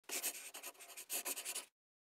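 A brief scratchy sound in two quick runs of short strokes, stopping abruptly about three-quarters of the way through.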